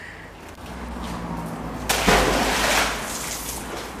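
A sudden splash about two seconds in, fading over about a second: a thrown fishing magnet on its rope landing in canal water. Under it a low steady rumble echoes in the bridge tunnel.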